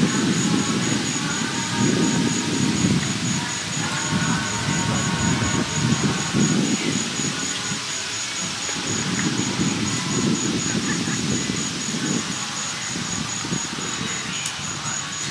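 Wind buffeting an outdoor microphone: an uneven low rumble that swells and fades in gusts. A faint steady high whine runs under it.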